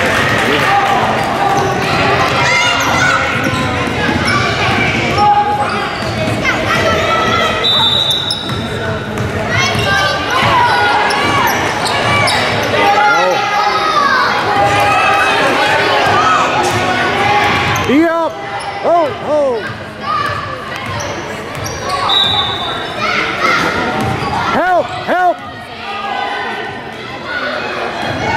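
A basketball being dribbled on a hardwood gym floor during a youth game, with voices of spectators and players echoing in the hall. Clusters of short squeaks come about two-thirds of the way through and near the end.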